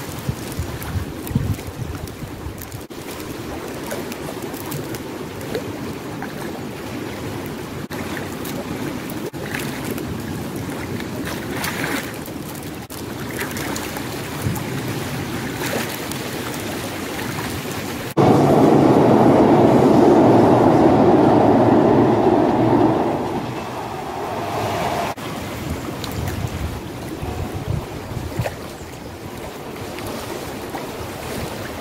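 Steady rush of a fast-flowing river with wind on the microphone. Plastic bag rustling in the first couple of seconds. A much louder, deeper stretch of rushing noise starts abruptly past the middle and fades out a few seconds later.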